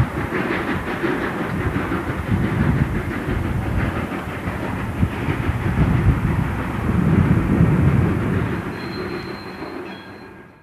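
A train running on the rails, a continuous rumble with uneven heavier beats, fading out near the end.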